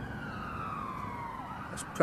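A siren wailing: one long, slow slide down in pitch.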